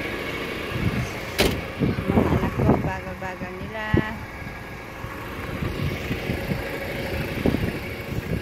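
Diesel engine of a refuse collection truck running steadily at idle, with two sharp knocks a few seconds apart.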